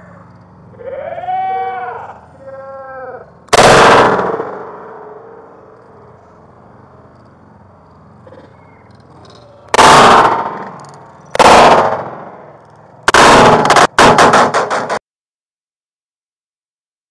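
Gunshots played back slowed to one-third speed, so each one is drawn out and lowered in pitch, with a long smeared tail. A single shot comes after a slowed, drawn-out shout, two more follow several seconds apart, and near the end a rapid string of shots ends in a sudden cutoff.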